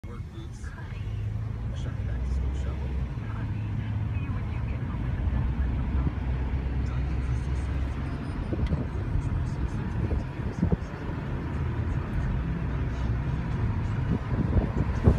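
Hyundai car's road and engine noise heard from inside the cabin while driving: a steady low rumble.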